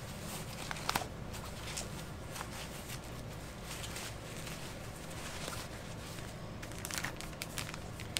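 Disposable diapers and the fabric of a diaper bag rustling and crinkling as the diapers are pushed into the bag's pockets, with scattered light clicks, a sharper one about a second in and a few more near the end.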